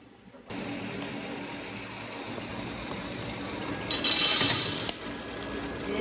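Roest sample coffee roaster whirring steadily, its motor and fan switching on about half a second in. Around four seconds, about a second of bright rattling as the roasted beans spill into the cooling tray at the end of the roast.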